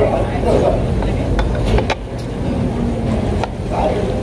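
Busy restaurant dining-room noise: a steady low rumble with murmured voices and a few sharp clinks of cutlery and dishes.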